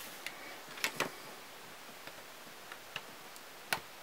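Lego plastic bricks and a minifigure clicking and tapping as they are handled and set into place: a few scattered sharp clicks, the loudest near the end.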